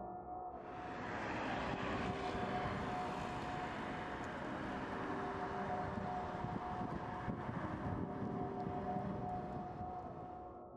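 A steady rumbling roar swells in about half a second in beneath a held ambient music drone, and begins to fade near the end.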